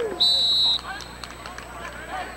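A referee's whistle blows one short, shrill blast of about half a second, blowing the run play dead at the tackle. Shouting voices from the sideline and crowd go on around it.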